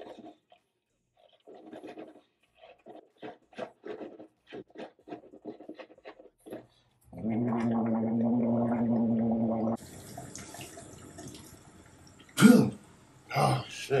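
A man rinsing his mouth after brushing his teeth: liquid sloshed around the mouth in quick short strokes, then gargling with his head tilted back for about three seconds, loud and steady. Near the end, after a steady hiss starts, there are two loud short bursts as he spits into the sink.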